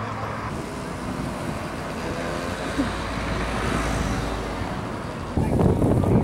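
Street ambience: road traffic with people chatting as a crowd walks past, and a low rumble swelling around the middle. A little over five seconds in, it cuts suddenly to a louder outdoor background.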